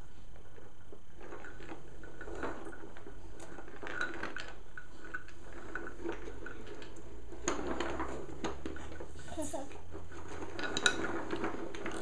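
Wooden toy tractor and trailer being pushed across wooden floorboards, its wheels rolling with light, scattered clicks and clatters.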